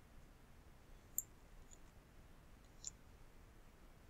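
Near-silent room tone with two faint, sharp clicks from working a computer, the louder about a second in and another near three seconds in.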